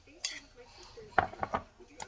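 Metal spoon clinking and scraping against a ceramic bowl: one clink about a quarter second in, then a quick run of clinks in the second half.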